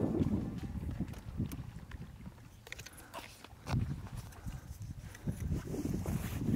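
Outdoor shoreline ambience: wind buffeting the microphone in low, uneven rumbles, with scattered faint clicks and knocks. Background music fades out at the start.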